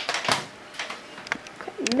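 Handling noise: a string of light clicks and knocks from the camera and the plastic Lite Brite being moved about on the bench. Near the end a voice comes in with a rising-then-falling tone.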